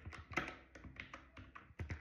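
Computer keyboard being typed on: faint, irregularly spaced key taps, several within a couple of seconds.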